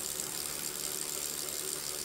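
Wahoo KICKR Core direct-drive smart trainer spinning under steady pedalling, with the chain running over the cassette: an even whirring hiss that holds level throughout.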